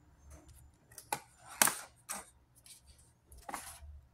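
A few short, sharp rustles and clicks of a paper card with clips being handled and put away. The loudest comes about a second and a half in.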